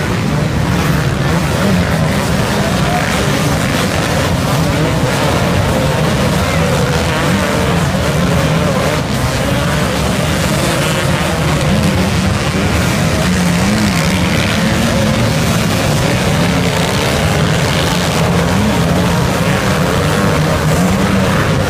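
A large pack of off-road racing motorcycles running together on sand, many engines revving at once in a continuous loud din. Their pitch keeps rising and falling as riders work the throttle up the dune.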